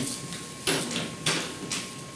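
Nail file rasping across a fingernail in three short strokes about half a second apart, filing from underneath to shape a smooth bevel for playing classical guitar.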